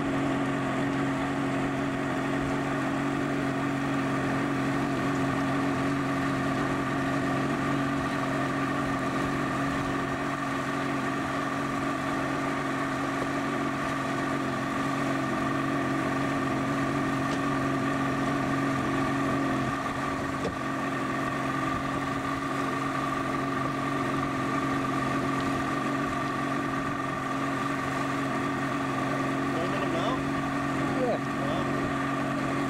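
Motorboat engine running at a steady speed while towing an inflatable tube, its pitch holding even.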